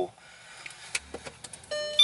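Faint clicks and handling noises from a plastic juice bottle being turned in the hands, then a steady held musical note that starts near the end.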